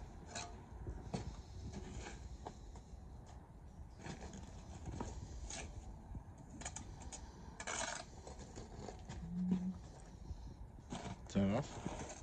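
Steel bricklaying trowel scraping and spreading mortar on a brick pier, with scattered clinks and knocks of bricks being handled and one longer scrape a little past the middle.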